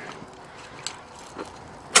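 Faint steady outdoor background noise with a couple of light clicks.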